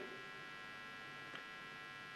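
Faint steady electrical mains hum in a pause between spoken sentences, with one tiny tick a little past halfway.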